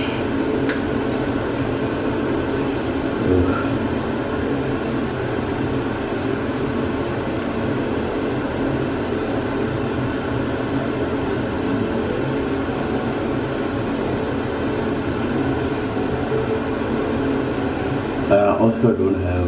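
A steady mechanical whir, even in level throughout.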